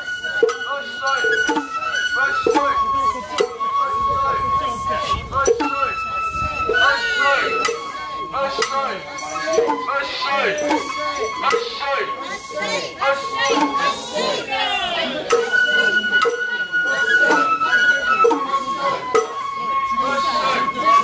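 Sawara-bayashi festival music: a shinobue bamboo flute plays a melody of long held notes that step between pitches, over frequent strikes of kotsuzumi hand drums.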